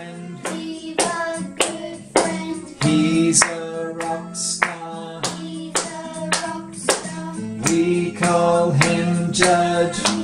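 Voices singing a simple children's tune with hands clapping a steady beat, about two claps a second, over a music backing track.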